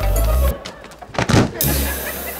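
Comedy background music with a deep bass beat that stops about half a second in. A little over a second in comes a short, loud whoosh, like a transition sound effect, followed by a low hum.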